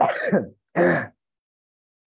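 A man clearing his throat twice in quick succession, two short rough bursts about half a second each.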